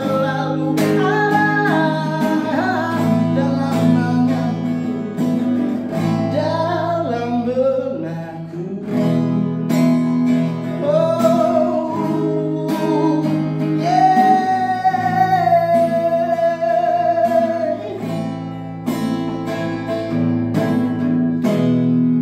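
Acoustic guitar strummed in a steady rhythm while a man sings over it, holding one long note about two-thirds of the way through.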